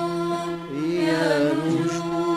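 Arabic orchestra of violins and ouds holding one long sustained note, with a melody line that bends up and down over it about a second in.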